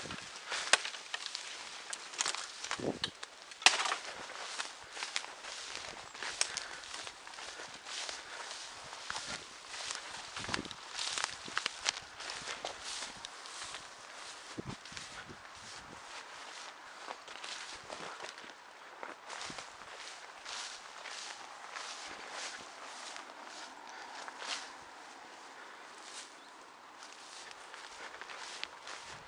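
Footsteps of a person walking over rough ground: a continuous run of irregular crunches and rustles, with a sharper knock about a second in and another just under four seconds in.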